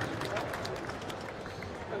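Light, scattered applause from the audience, with crowd voices in the background.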